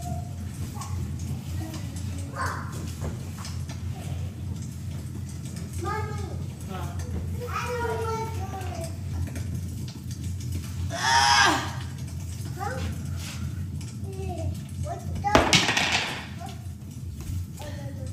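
Toddlers babbling and squealing in short bursts, with one loud high squeal about eleven seconds in. A short loud noise comes near the end, over a steady low hum.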